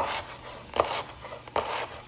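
Knife chopping a white onion on a wooden cutting board: three strokes about a second apart, each a sharp knock of the blade on the board with a crisp slicing crunch.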